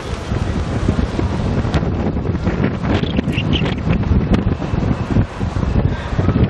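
Wind buffeting the camcorder's microphone: a loud, uneven low rumble that rises and falls in gusts.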